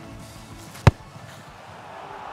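A football struck once, hard, about a second in: a single sharp kick for a driven, lofted 'ping' long pass. Faint background music runs underneath.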